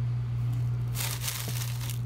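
Plastic food wrapping crinkling as it is handled, starting about halfway through, over a steady low hum.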